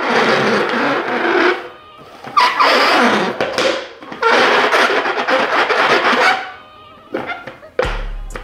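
Upturned bowls sliding and scraping across a granite countertop as they are shuffled: three long scrapes, then a few light knocks near the end as they are set down.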